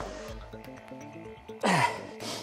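Background music, with a man's short, loud grunt of effort near the end as he strains through a rep of heavy dumbbell renegade rows.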